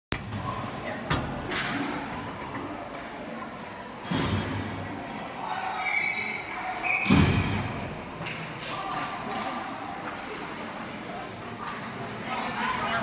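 Indoor ice rink ambience of indistinct voices, broken by three hard thumps about one, four and seven seconds in, the last the loudest.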